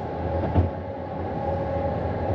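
Road noise heard from inside a moving car's cabin: a steady tyre and engine rumble, with a low bump about half a second in.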